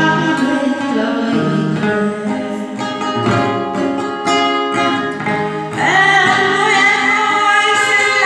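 A woman singing into a microphone, accompanied by a man playing an acoustic guitar. About six seconds in her voice comes in louder on a long held note.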